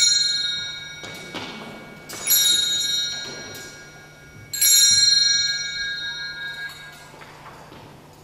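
Altar bells rung at the elevation of the chalice during the consecration: a bright metallic ring that dies away, already ringing at the start and struck again about two seconds in and about four and a half seconds in.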